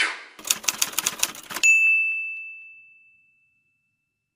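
Typewriter sound effect: a quick run of key clacks lasting about a second, then a single bell ding that rings on and fades away over about a second and a half.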